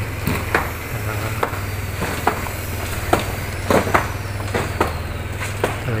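A steady low engine-like drone, with scattered sharp knocks and taps.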